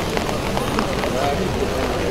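Indistinct voices of several people talking close by, over a steady low rumble of outdoor noise.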